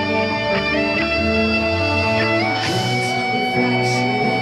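Heavy metal band playing live: an electric guitar plays a melodic line over held chords, with two cymbal crashes near the end.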